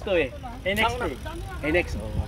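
People talking in Filipino, with exclamations near the end, over a steady low rumble.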